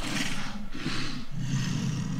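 A giant movie monster's low, rumbling growl from the film trailer's soundtrack, swelling about a second in.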